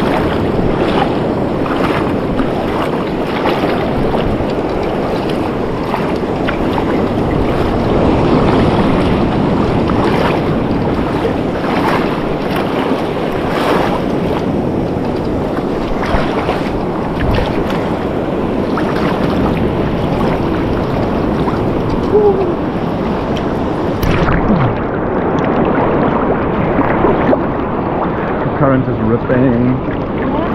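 Shallow sea water sloshing and splashing around a camera held at the surface, with wind on the microphone. About two-thirds of the way through the sound turns suddenly duller as the highs drop out.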